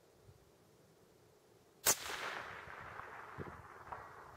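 A single shot from a scoped Blaser rifle fired prone, coming a little under two seconds in, followed by an echo that fades away over about two seconds.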